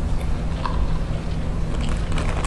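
Steady low rumble of a large hall's background noise, with a few faint scattered clicks and crackles.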